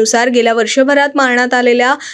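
Speech only: a woman narrating a news headline in Marathi, without pause.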